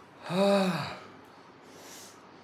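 A man's single breathy, voiced gasp, like a drawn-out "aah" with the pitch rising then falling, lasting under a second: his reaction to smelling perfume on his wrist.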